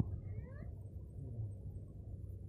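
A brief, faint high-pitched cry about half a second in, rising and then falling in pitch, over a steady low hum.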